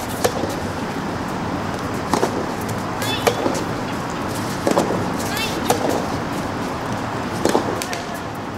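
Soft tennis rally: a rubber soft tennis ball is struck by rackets and bounces on the court, giving a series of sharp pops one to two seconds apart over steady outdoor background noise.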